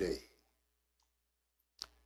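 A man's voice ends a word, then a very quiet pause broken by a faint tick about a second in and one sharp click near the end.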